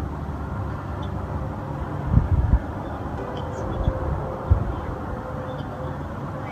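A low, steady background rumble with a few dull low thumps, a cluster about two seconds in and one more about four and a half seconds in. A faint steady hum joins in the second half.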